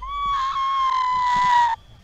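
A woman's shrill, excited scream, one long high note held for nearly two seconds, sagging slightly in pitch before it cuts off.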